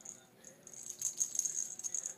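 A small plastic cat toy ball with a bell inside jingles and rattles as a cat bats it and it rolls across a tile floor. It starts about half a second in and keeps up a steady high jingle from about a second in.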